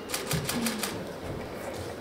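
A quick, even run of sharp clicks, about eight in the first second, after which only low room noise remains.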